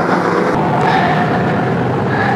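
A pack of BriSCA F1 stock cars' V8 engines running hard around the track, a steady loud drone with a few held engine tones.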